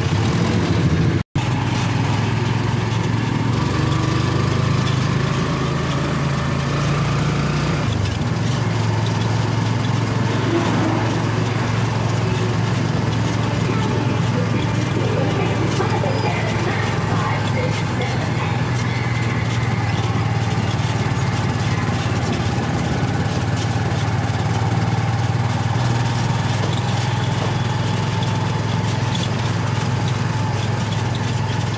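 A road vehicle's engine running steadily with a low hum under traffic and road noise while riding along a street; the sound drops out for an instant about a second in.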